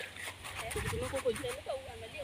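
A high-pitched voice talking indistinctly in the background, with a low rumble of wind or handling underneath.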